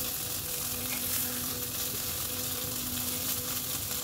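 Steady sizzling of brinjal frying in mustard oil in the kadai on the stove, with the dry crackle of crisp fried neem leaves being crushed by hand in a steel plate.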